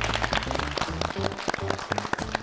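Studio audience clapping over show music, greeting the announcement of the winning team.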